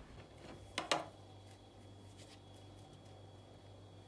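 Two quick light knocks on a bamboo cutting board about a second in, as a knife and mushrooms are handled. Then faint scraping and ticks from a knife peeling the skin off a button mushroom cap, over a low steady hum.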